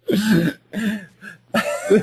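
A man's voice making short wordless sounds, in three bursts, like throat clearing or a stifled laugh.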